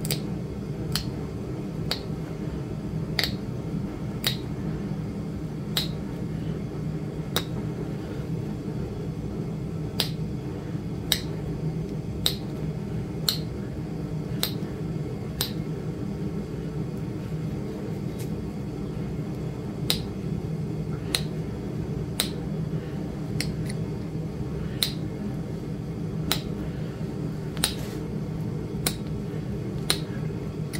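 Sharp clicks of small flakes popping off a flint point as a hand-held pressure flaker is pressed along its edge, roughly one click a second at an uneven pace, over a steady low hum.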